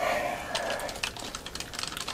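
Rapid light clicking and tapping of a handheld plastic fan mister being handled, starting with a brief rush of sound.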